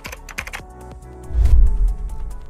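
Typing sound effect: a quick run of computer-keyboard clicks over intro music, with a deep bass hit, the loudest sound, near the end.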